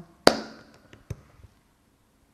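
A single sharp hand clap with a short room echo, followed about a second later by a much fainter tap.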